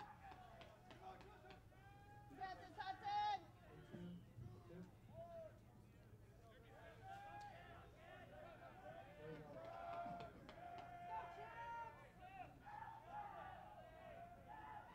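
Faint ballpark ambience: distant voices of players and fans calling out and chattering, over a steady low hum.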